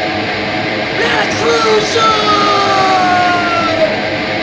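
Hardcore punk recording playing loud and dense, with distorted guitars and drums and long shouted vocal lines that glide downward in pitch.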